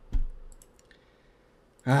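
A dull thump right at the start, then a few light clicks in quick succession; a man's voice begins near the end.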